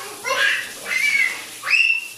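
A toddler girl's high-pitched squeals and laughter in short bursts, ending on a rising squeal that holds its pitch.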